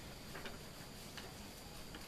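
Quiet room tone with a few faint, light clicks, spaced irregularly.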